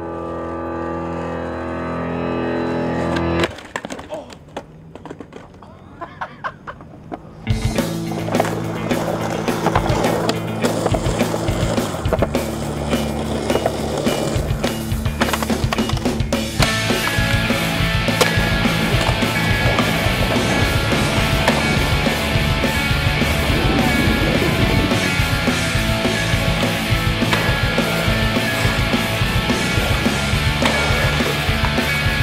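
Skateboard sounds on pavement, with sharp pops and knocks from tricks, heard plainly for about four seconds after a swelling held musical note cuts off abruptly. A music soundtrack with a steady beat then comes in and carries on over the skating, growing fuller about halfway through.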